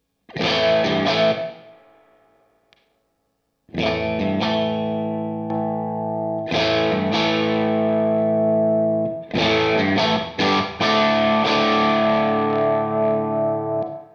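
Electric guitar chords played through a Hudson Broadcast germanium preamp pedal into an Orange Rockerverb's clean channel, the pedal supplying the gain. A single strummed chord rings out and fades, then after a short pause comes a run of sustained chords that lasts to the end.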